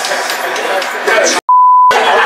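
Excited shouting and chatter of a group celebrating. About one and a half seconds in, the sound cuts out and a loud, steady, high-pitched censor bleep covers a word for about half a second.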